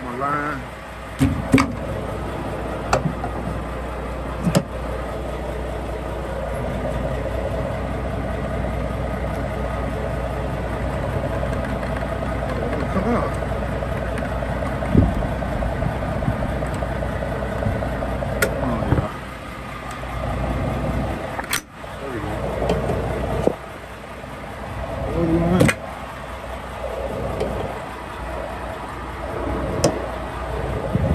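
Semi truck's diesel engine idling steadily, with a few scattered sharp clicks and clunks as the air-line gladhands and trailer electrical cord are handled at the back of the cab.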